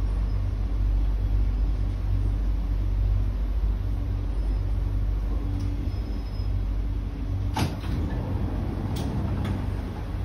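Inside a C151B MRT train car braking into a station: a steady low running rumble, then a sharp knock about seven and a half seconds in as the train comes to a stop. Two clicks follow near the end as the train doors and platform screen doors begin to slide open.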